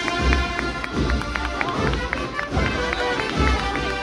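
Procession band playing a march: brass notes over steady drum beats.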